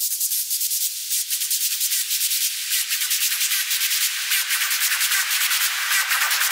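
Opening of an experimental electronic noise track: harsh hissing noise pulsing rapidly, with a filter slowly opening so the sound reaches steadily lower and grows fuller.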